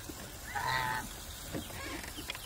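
A single call from domestic waterfowl, about half a second long, starting about half a second in.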